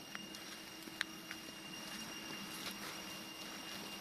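Faint forest ambience: a steady high drone with a low hum beneath, and a sharp click about a second in, followed by a few lighter ticks.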